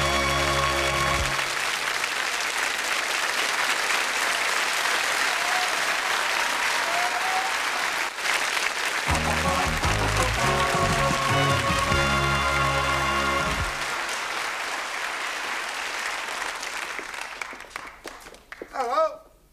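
Studio audience applauding, with a short burst of the show's theme music at the start and another midway through. The applause dies away near the end.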